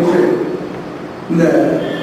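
Only speech: a man lecturing, with a pause of under a second about halfway.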